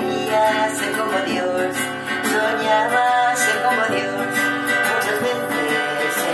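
A woman singing a hymn-like song while strumming an acoustic classical guitar fitted with a capo, in a steady strummed accompaniment.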